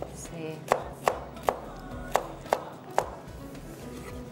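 Chef's knife chopping vegetables on a plastic cutting board. The blade hits the board in about seven sharp knocks, unevenly spaced, roughly two a second.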